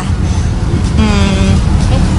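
Loud, steady low rumble of background noise, with a short burst of a person's voice about a second in.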